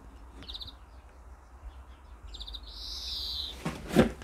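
A small bird outside calling high: a quick trill about half a second in, then another trill running into a longer high call near the end, with a bump right at the end.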